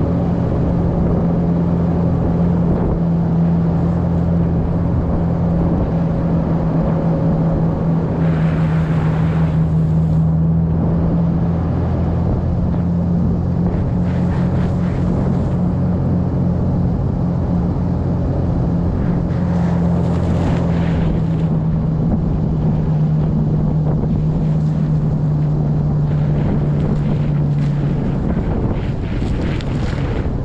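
Toyota Land Cruiser 80 Series' 4.5-litre straight-six running steadily under way, a low even drone with tyre and wind noise on the microphone, rising in short surges a few times. The engine's steady note drops away near the end.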